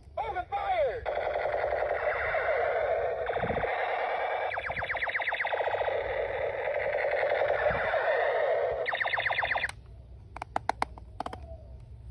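Battery-powered toy gun's built-in sound effect: a rapid electronic machine-gun rattle with wavering tones. It runs for about nine and a half seconds, stops abruptly, and a few sharp clicks follow.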